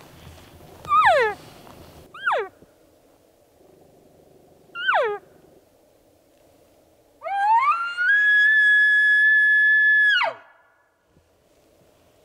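Elk calls: three short calls that fall in pitch, then a bugle that rises into a high whistle, holds for about two seconds and drops away sharply.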